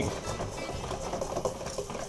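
Wire whisk beating a thick paste of egg yolk and grated pecorino in a stainless steel bowl over boiling water: rapid, steady scraping and clicking of the wires against the metal bowl.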